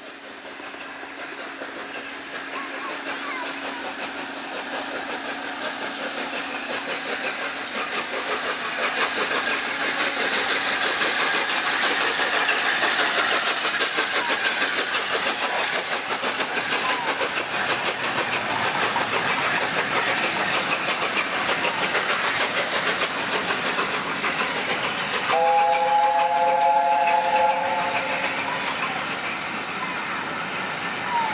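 LNER A4 Pacific steam locomotive and its train of coaches passing on the main line, the noise of the running gear and wheels on the rails building up and then carrying on as the coaches roll by. About 25 seconds in, the A4's three-note chime whistle sounds for a couple of seconds.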